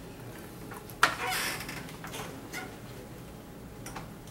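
A single short, sudden noise about a second in, fading within half a second, over faint room tone.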